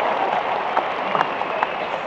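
Audience applauding: a steady patter of many hands with scattered sharper single claps, tailing off slightly near the end.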